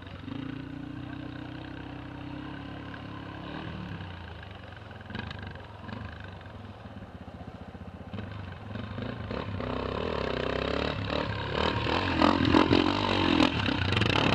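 Dirt bike engines running, steady at first, then one revving harder and louder over the last few seconds as it climbs.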